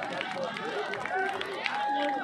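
Crowd of spectators at an outdoor ground, many voices talking and calling out at once.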